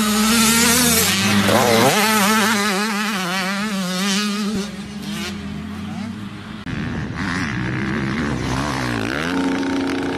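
Dirt bike engine revving hard as the bike accelerates, its pitch climbing sharply and then wavering rapidly up and down as the throttle is worked over rough ground. Near the end the revs rise again.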